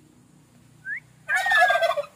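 A turkey gobbling: a short rising chirp about a second in, then a rattling gobble with a falling whistled note near the end.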